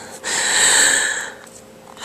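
A person drawing one deliberate deep breath in, close to the microphone, an airy rush lasting about a second.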